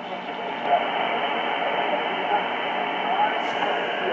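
JRC NRD-545 shortwave receiver playing a weak AM broadcast through its speaker: a faint voice under steady hiss and static, with the treble cut off so it sounds narrow and muffled. The RF gain has just been backed off to stop the AGC pumping caused by the signal's fading.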